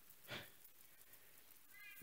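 Near silence in a pause of speech, broken by one short breath about a third of a second in and a faint high-pitched squeak near the end.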